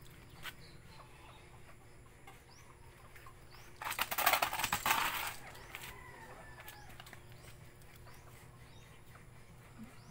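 A bird flapping its wings in a fluttering burst of about a second and a half, starting about four seconds in, followed by a short call. Faint small-bird chirps come and go throughout.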